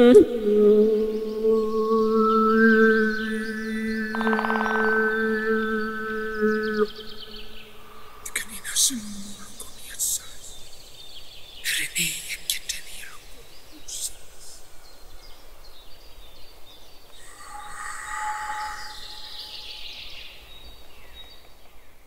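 A man's voice holds one long, steady sung note, which cuts off about seven seconds in. Quieter, scattered high chirps follow, strongest a few seconds after the note ends.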